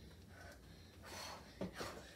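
A child's faint breathing in a quiet small room, with a short breathy gasp about a second in and a couple of soft short sounds near the end.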